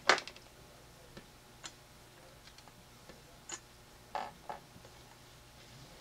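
Light clicks and taps of cut polymer clay discs and a thin metal blade against a glass work mat and a ceramic tile as the discs are lifted and set down. One sharp click right at the start is the loudest, followed by scattered faint ticks about a second apart.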